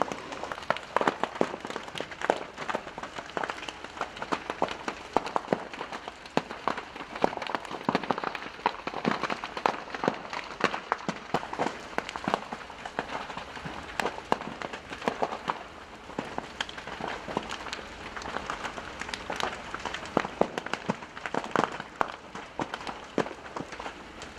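Large industrial building fire crackling, with dense, irregular sharp pops and snaps.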